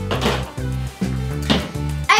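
Background music with a steady beat and a repeating low tune.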